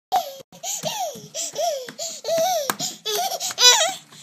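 Baby laughing in a run of short, high-pitched bursts, the loudest near the end.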